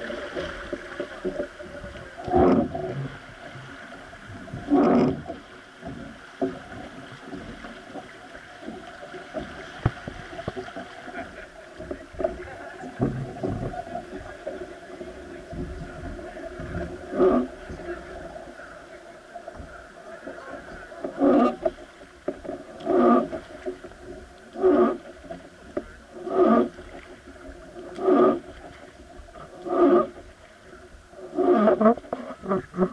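Wooden river boat being rowed: the oar groans in its oarlock with each stroke, regularly about every second and a half to two seconds in the latter part, over a steady rush of river water.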